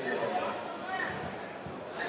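Indistinct chatter of many voices in a large sports hall.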